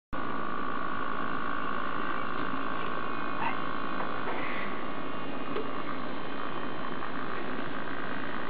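Steady electric whine and hiss from a prosthetic arm's servo motors as the gripper closes on a bottle and the wrist turns it. The tone shifts slightly about five seconds in.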